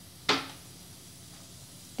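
A single sharp clink of kitchenware, a small steel bowl or spoon knocking on a hard surface, about a third of a second in, with a brief ring as it dies away.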